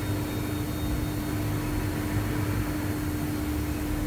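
Steady machinery hum of a processing plant: a low drone with one steady tone above it and an even hiss.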